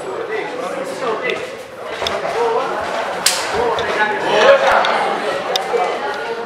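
Voices of spectators talking and calling out in a large hall, with one sharp smack about three seconds in.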